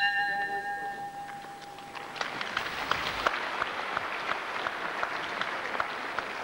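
Ring bell ringing out the end of the round, its tone dying away over the first two seconds. Then the crowd applauds, a steady patter of clapping.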